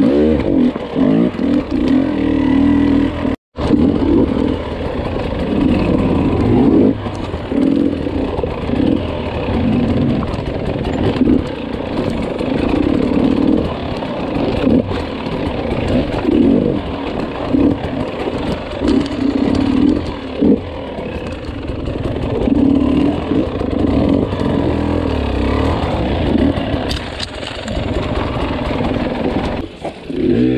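Dirt bike engine revving up and down at low speed while it climbs over loose rock, with scattered knocks. The sound cuts out briefly about three and a half seconds in.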